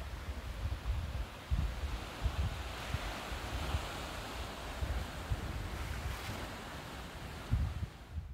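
Sea waves washing against a rocky shore, a steady hiss that swells around the middle, with gusts of wind rumbling on the microphone.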